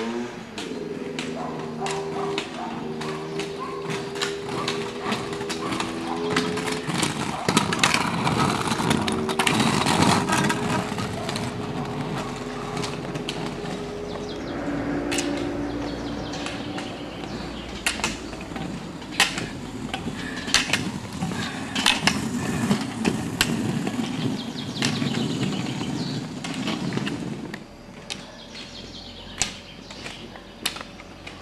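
Roller skis rolling uphill on asphalt. The skiers' pole tips strike the road in repeated sharp clicks, which grow clearer and more spaced in the second half. A car's engine runs close behind the skiers.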